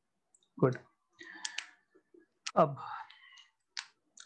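A few sharp, short clicks, two close together about a second and a half in and one more near the end, with faint scratchy handling noise between them.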